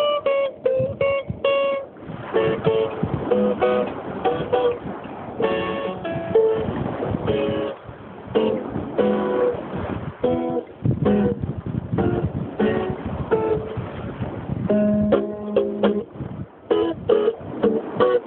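Steel-string acoustic guitar played fingerstyle, picking out single notes and short runs with occasional chords and brief pauses.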